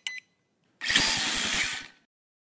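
Logo-sting sound effect: a brief electronic beep at the start, then about a second in a burst of buzzing, rattling noise with a fast pulse of about ten a second, like a power tool, that cuts off near the end.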